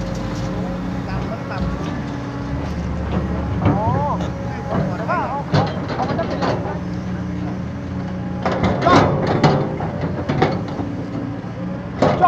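Hydraulic excavator's diesel engine running steadily while it works, with scattered knocks and scrapes from the bucket digging into a soil pile, bunched together about two thirds of the way through.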